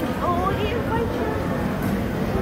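Indistinct voices of people talking nearby over a steady low rumble of background noise in a busy shop.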